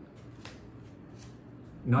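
Tarot cards being handled on a table: a few soft flicks and slides of card stock, then a man starts speaking just before the end.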